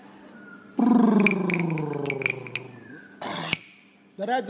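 A man's long, falling, gravelly vocal call opening a welcome dance, with several sharp ringing taps over it. A short hissing burst follows near the end.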